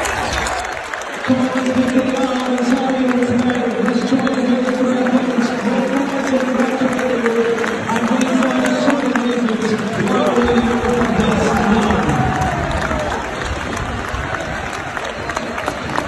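A stadium crowd singing together in long drawn-out notes, with clapping throughout. The singing fades out about twelve seconds in, leaving applause and crowd noise.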